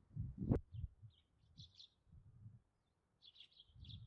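Small birds chirping in short, scattered calls, over an uneven low rumble. A single sharp click comes about half a second in.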